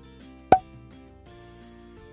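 Gentle background music with steady sustained notes, and a single short, sharp pop sound effect about half a second in.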